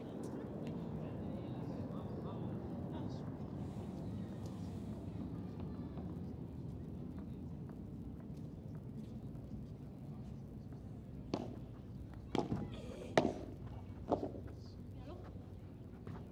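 A low background murmur of voices, then a short padel rally starting about eleven seconds in: a handful of sharp pops as the ball is struck with solid padel rackets, the loudest about two seconds into the rally.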